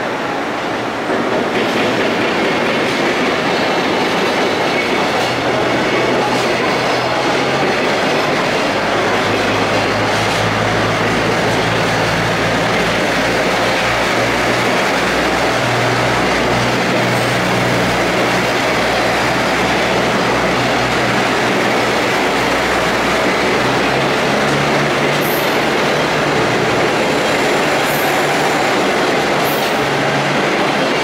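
KiHa 85 series diesel multiple unit pulling out and passing close by, its Cummins diesel engines running under power over steady wheel and rail noise. The noise rises about a second in as the train gets moving, and the low engine drone shifts in pitch in steps as it gathers speed.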